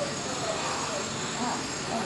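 Classroom room tone: a steady hiss with faint scattered voices in the background.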